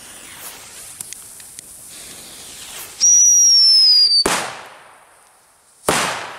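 Black Scorpion Super Whistling firecrackers going off: a hiss, then a loud whistle about three seconds in that falls slightly in pitch for just over a second and ends in a sharp bang. A second bang comes near the end.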